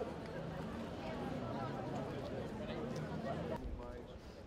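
Indistinct chatter of many people talking at once, with no single voice standing out. About three and a half seconds in it cuts to quieter background talk.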